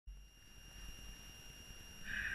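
Faint low rumble and hiss with a steady high-pitched electronic whine.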